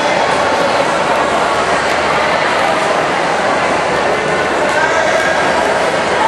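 Steady babble of many overlapping voices echoing in an indoor swimming pool hall, with no single voice standing out.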